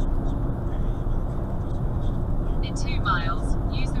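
Steady low rumble of a lorry's engine and tyre noise heard inside the cab at motorway speed. A voice starts about three seconds in.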